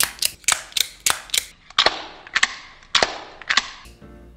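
Sliding-blade (out-the-front) knife being fired open and retracted over and over: about ten sharp snapping clicks, quick at first and then slower, the later ones with a short ringing tail.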